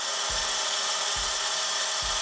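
Metal lathe facing off the end of a mild steel bar with a carbide-insert cutting tool: a steady hiss of the cut over the running spindle.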